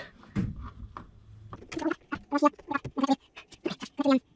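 Faint scraping of a thick battery cable being handled, then a man chuckling in a quick run of short bursts from about two seconds in.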